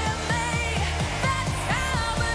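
Live pop music: a woman singing lead into a microphone over a steady electronic dance beat.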